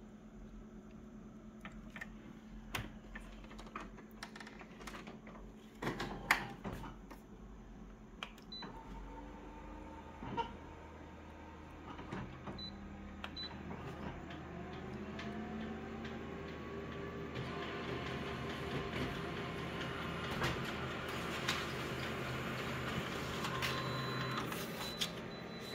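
Office multifunction copier making a copy. Scattered clicks and knocks come first, then about nine seconds in its motors start with a steady hum and rising whirs. The running sound grows louder over the last several seconds as the copy is printed and fed out.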